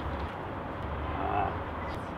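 Steady rumble of outdoor traffic noise, with a faint voice speaking briefly about a second in.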